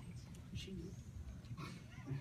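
Faint, indistinct voices over a steady low room hum, with a few small rustles and clicks.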